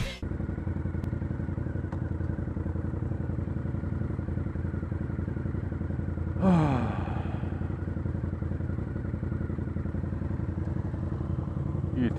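Motorcycle engines idling steadily while stopped. About six and a half seconds in, one quick throttle blip whose revs fall straight back to idle.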